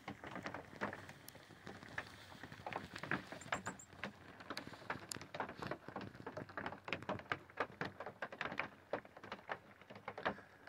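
Irregular light tapping and clicking, several taps a second at uneven spacing, with no steady tone.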